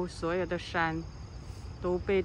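A voice speaking Mandarin during the first second, over a steady, high-pitched insect chorus that runs throughout.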